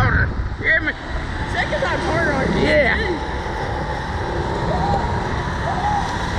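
Wind rumbling on the microphone of a Slingshot ride's on-board camera as the launched capsule swings through the air. Several short wordless vocal sounds from voices rise and fall over it.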